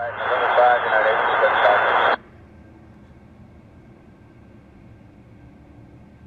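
Air traffic control radio transmission: a voice garbled in static, cutting off abruptly about two seconds in when the transmission ends, leaving a faint steady hiss.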